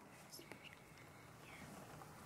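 Near silence: room tone with a few faint, soft sounds about half a second in.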